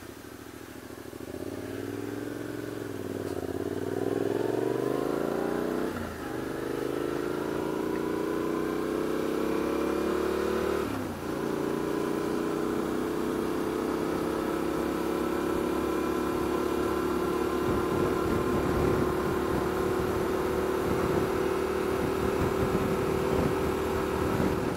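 Adventure motorcycle engine pulling away from a standstill and accelerating through the gears. Its pitch climbs, drops briefly with two upshifts about six and eleven seconds in, then settles into a steady cruise.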